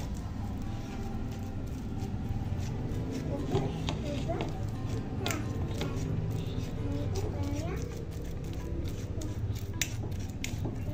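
Fork mashing ripe bananas in a stainless steel bowl, with a few sharp clinks of the fork against the metal, mostly in the middle and just before the end, over steady background music.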